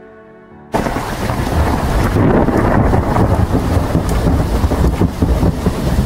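Thunderstorm sound effect: a loud, dense rumble with a rain-like hiss that starts suddenly about a second in and runs on.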